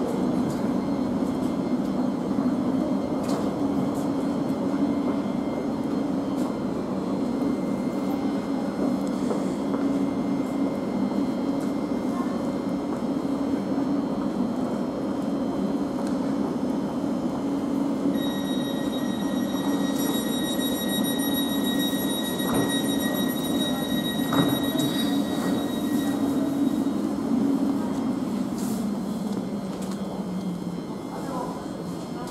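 Thameslink Class 700 electric train standing at a platform, its onboard equipment giving a steady low hum. A high, steady whine joins a little past halfway and lasts several seconds.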